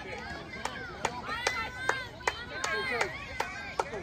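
Young girls' high-pitched voices chanting and shouting, over a steady beat of sharp claps about two and a half a second.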